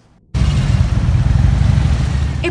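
Several police motorcycles with their engines running, riding in slowly in a group: a loud, steady, low engine rumble that starts abruptly about a third of a second in.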